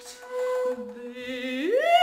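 Contemporary chamber music for bass flute, bass clarinet and female voice: a long held note, with a lower steady note joining beneath it partway through, then a smooth rising glide near the end.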